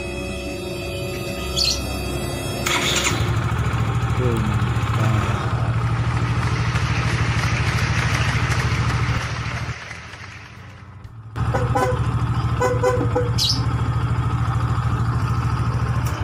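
Yamaha Xeon GT125 scooter's 125 cc single-cylinder four-stroke engine, started on the electric starter about three seconds in and idling steadily. It cuts out near ten seconds and is restarted a second and a half later, idling again. The starter catches at once with the newly fitted starter relay, where the old worn relay only clicked. Background music plays underneath.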